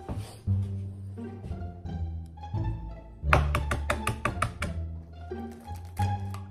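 Background music: low bowed strings and bass holding notes, with a quick run of short plucked notes about three seconds in.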